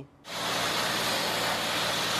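Pressure washer jet spraying water onto slate roof tiles from a long lance: a steady hiss that starts abruptly about a quarter second in.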